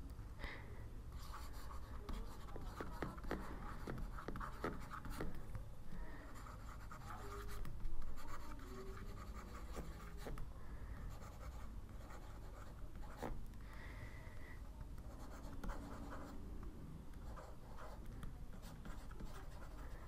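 Faint handwriting sounds: a pen tip scratching and tapping on a writing surface as words are written out, with scattered small clicks.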